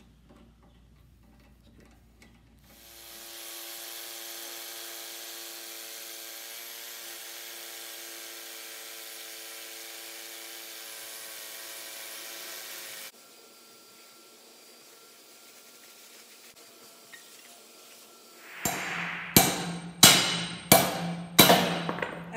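Corded hammer drill boring into a concrete floor, running steadily for about ten seconds and then stopping. Near the end come about six hammer blows, roughly half a second apart, driving anchor bolts into the lift post's base plate.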